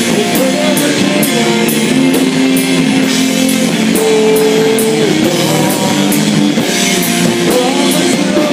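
Live rock band: a man singing over electric guitar and a drum kit, with cymbal strokes keeping a steady beat. A long held note sits about four seconds in.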